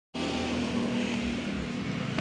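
Steady outdoor traffic noise with a low engine hum, starting just after a brief dead gap at the very start.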